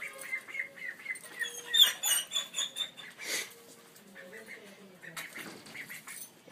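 A young duck peeping: a quick run of short high-pitched peeps that climb higher and loudest about two seconds in, followed by a brief rustle a little after three seconds.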